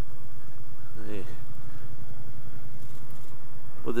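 Triumph Bobber Black's 1200cc liquid-cooled parallel-twin engine running steadily, a low even hum with no revving. A short vocal sound from the rider comes about a second in, and speech starts at the very end.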